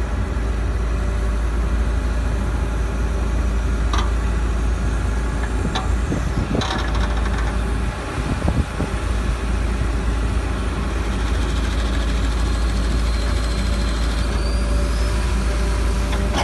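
An excavator's diesel engine runs steadily while it works a ditch-cleaning bucket through a weedy drainage ditch, with a few short knocks from the machine along the way.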